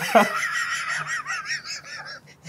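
A person laughing hard in a high-pitched voice, in quick pulses about five a second that fade toward the end.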